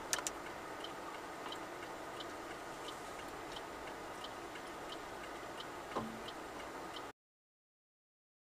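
A car's indicator relay clicking steadily, about three ticks every two seconds, over a steady low cabin noise. There is a sharp double click at the start and a single thump about six seconds in, and all sound stops abruptly about seven seconds in.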